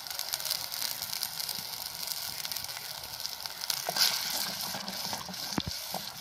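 Steady sizzling hiss with small crackles from vegetables cooking in water in a clay pot over a wood-fired mud stove.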